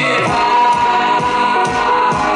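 Live band music with a man singing into a microphone over a steady drum beat.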